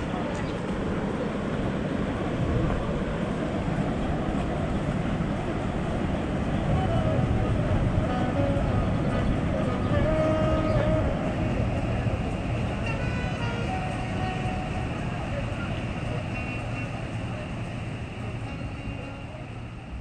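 Steady rush of river water mixed with a passing tour boat's engine, the noise swelling toward the middle and easing off near the end, with faint voices.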